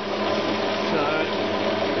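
CQ9325 bench metal lathe running steadily, its motor and gear train giving a constant hum and whine.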